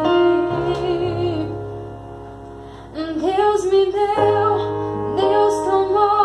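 A woman singing a slow ballad melody accompanied by a digital piano playing sustained chords. The voice drops out briefly near the middle, leaving the piano softer, then comes back in about three seconds in.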